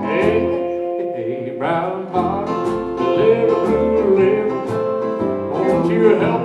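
Live country band music: acoustic guitar strumming over a bass line, with a man singing long, bending notes through most of it.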